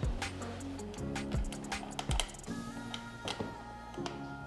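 Background music with sustained notes, over light irregular clicks and taps of screwdrivers working screws into a metal junction-box cover.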